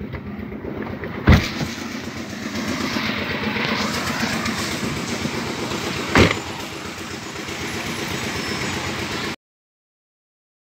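A car door being opened and then shut: a sharp knock about a second in and another about six seconds in, over steady background noise that stops abruptly near the end.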